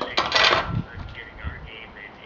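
A small snow shovel being laid down on the paving: one sharp metallic clatter with a short ring in the first half second, followed by fainter rattles.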